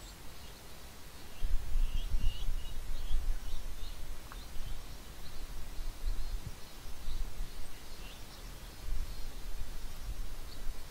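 Small birds chirping in short calls. An uneven low rumble on the microphone starts about a second and a half in.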